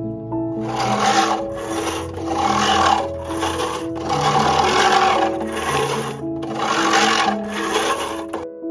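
Hand-push cylinder (reel) lawn mower cutting grass: the spinning blades whir in a series of strokes about a second long, with a brief break between each as the mower is pulled back and pushed again.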